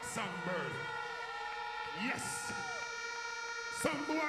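Live concert sound between songs at an open-air dancehall show: a held chord of steady tones from the stage PA, under crowd voices and shouts, with a long pitch glide that rises and then falls.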